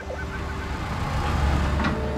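Deep engine rumble of an excavator, building in loudness and stopping abruptly at the end.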